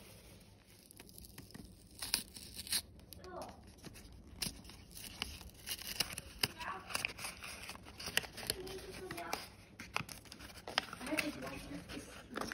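Paper wrapping torn and unfolded by hand from a small gift box, a quick run of sharp crinkles and tears that starts about two seconds in.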